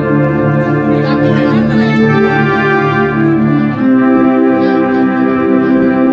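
Electronic keyboard playing long sustained chords, the chord changing a little under four seconds in.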